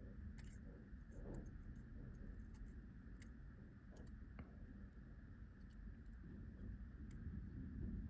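Faint, irregular light clicks of steel tweezers touching the parts of an NH35 watch movement, over low room noise.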